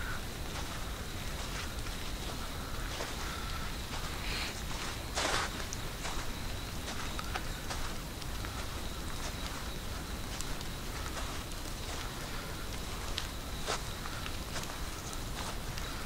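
Footsteps on a rain-soaked sandy woodland trail, with a few sharper clicks and rustles. A faint steady high tone sits underneath.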